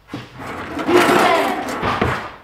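A kitchen drawer yanked open and rummaged, with a loud, rapid rattling clatter of its metal contents, loudest about a second in.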